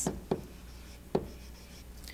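Pen writing on an interactive whiteboard: two short strokes, about a third of a second in and again just after a second, over a low steady hum.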